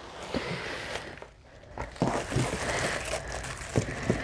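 Clear plastic bag crinkling as it is handled and unwrapped, with a few light knocks; it goes quieter briefly between about one and two seconds in.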